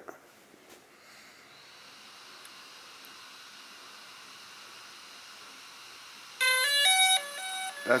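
DJI Spark drone playing its power-on chime: a short melody of several quick electronic notes near the end, signalling that the drone has booted up. Before it, a faint steady hiss.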